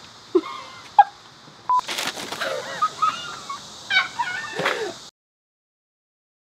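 People laughing in short, high, wavering giggles, with a few sharper bursts. The sound cuts off abruptly to dead silence about five seconds in.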